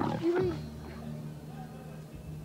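A pig grunting briefly at the start, then a low, steady held note of music.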